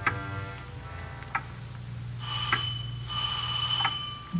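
A short music cue fades out, then a doorbell sound effect rings twice: a steady electric ring of about a second, a brief break, and a second ring.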